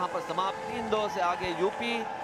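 A man's voice speaking loudly in short, pitch-swinging phrases with unclear words, over a steady hum.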